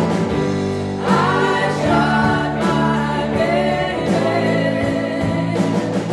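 Live band playing a song: female vocals sung into microphones over electric guitars and bass guitar, with long held notes.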